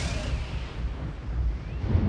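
Logo sting sound effect: a deep, continuous rumble under a fading hissing swoosh, swelling again near the end.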